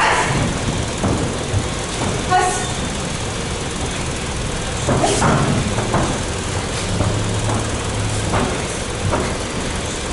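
A steady low rumble of background noise, with a few short thuds and scuffs from bare feet and bodies moving on the ring canvas during clinch work.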